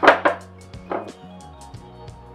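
Knocks of a tripod being handled as one leg is lowered to level it: a sharp one at the very start and a smaller one about a second in, over background music with a steady beat.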